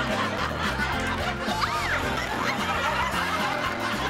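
Bouncy comedy background music with a stepping bass line, under a canned laugh track of chuckles and snickers.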